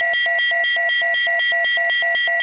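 Synthesized electronic intro sound: a steady high pure tone with a rapid pulsing of short lower and higher beeps, about four a second.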